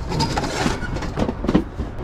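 Cardboard boxes and cluttered junk being dragged and shifted by a gloved hand: a steady scraping and rustling of cardboard, broken by many small knocks and clunks.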